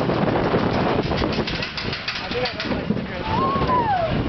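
A wild mouse roller coaster car running along its steel track, with a steady rush of air over the microphone and a rapid run of clicks and rattles about a second in. Near the end a rider lets out one drawn-out call that rises and falls.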